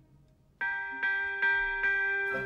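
Orchestral bells in an operetta recording: after a brief near-silent pause, four struck bell notes a little under half a second apart, each ringing on under the next.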